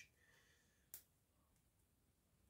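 Near silence, with one faint click about a second in, from fingers picking at the plastic shrink seal on a sauce bottle's neck.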